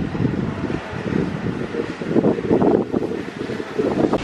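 Wind buffeting the camera microphone with an uneven low rumble, gusting louder in the middle of the stretch.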